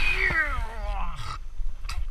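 A person's voice making one long vocal sound that slides down in pitch, over wind and water rushing past; the rushing drops away about one and a half seconds in.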